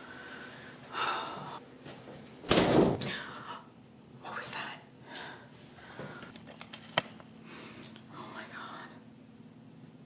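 A woman whispering and breathing close to the microphone in short, breathy bursts. There is a loud thump about two and a half seconds in and a single sharp click around seven seconds.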